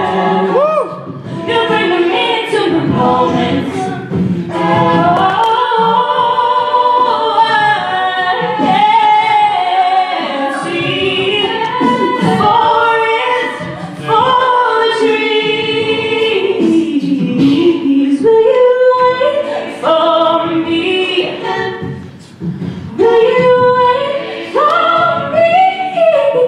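A cappella group singing: a female lead voice over several backing singers, with no instruments.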